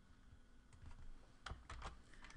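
A few faint computer keyboard keystrokes: a single click under a second in, then a quick cluster of clicks in the second half.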